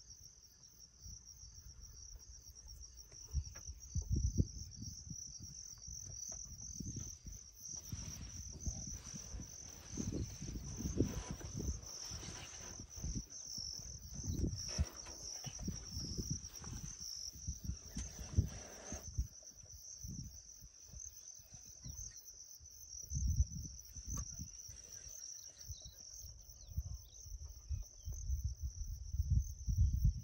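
Insects chirring: one continuous high-pitched trill, with irregular low rumbles underneath through much of it.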